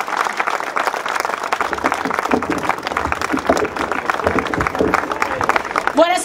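Crowd applause: many hands clapping steadily and densely.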